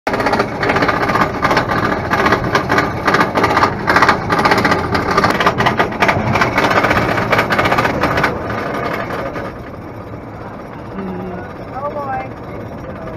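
Roller coaster lift hill: the chain and anti-rollback dogs clattering rapidly and loudly as the car is hauled up. About eight seconds in the clatter stops as the car crests and levels out, leaving a softer steady rolling sound.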